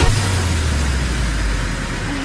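Car interior noise: a steady low engine and road rumble heard from inside the cabin of a moving car, easing slightly near the end.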